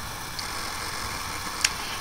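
Room tone in a pause between words: a steady, even background hiss with one faint short click about one and a half seconds in.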